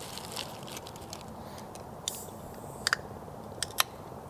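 Gas canister camp stove burner hissing steadily under a metal pot of simmering broth. Plastic bag crinkles briefly about halfway through, and chopsticks tap sharply against the pot a few times near the end.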